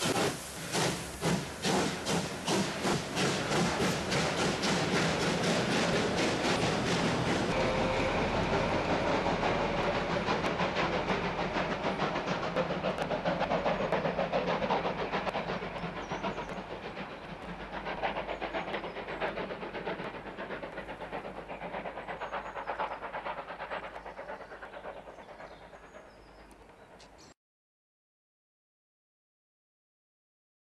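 Prussian P8 steam locomotive 38 2267 working a passenger train: a steady rhythm of loud exhaust chuffs, about two a second, then a denser running noise of steam and train that gradually dies away and fades out shortly before the end.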